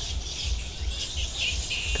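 Outdoor ambience of birds chirping and insects buzzing, with small chirps standing out about halfway through. An uneven low rumble runs under it, typical of wind on a lapel microphone.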